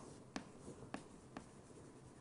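Writing on a lecture board: a few faint, sharp taps and strokes as the words of a proposition go up.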